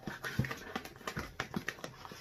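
A run of light, irregular taps and knocks, about ten in two seconds, from items and packaging being handled on a tabletop.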